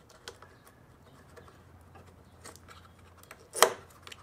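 Faint clicks of plastic being handled, then one sharp snap about three and a half seconds in as the locking tab of the wiring boot is pushed home into the Hummer H3's door jamb.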